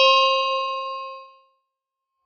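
A bell-ding sound effect from a subscribe-button and notification-bell animation. It is a single struck bell tone that rings and fades away over about a second and a half.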